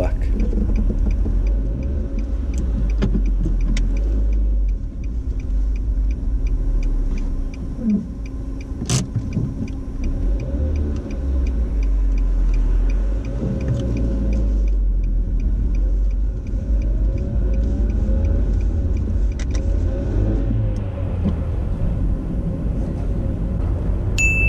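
Inside a car cabin on the move: a steady low rumble of engine and tyre noise as the car pulls away and drives along. Faint regular ticking runs through the first half, and there is one sharp click about nine seconds in.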